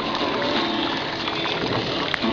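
A steady rushing noise with faint voices underneath.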